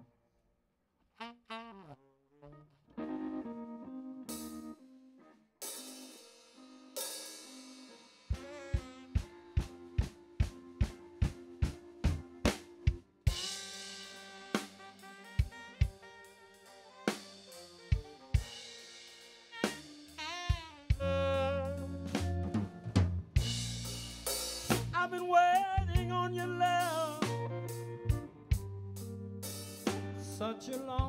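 A blues band starting the intro of a slow ballad. After a few sparse opening notes, a slow, steady drum beat comes in about eight seconds in at roughly two strokes a second. From about twenty seconds in, bass and a wavering lead melody fill out the full band.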